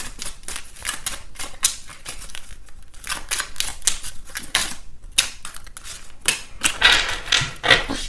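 A new tarot deck being shuffled by hand: a quick, irregular run of card flicks and taps.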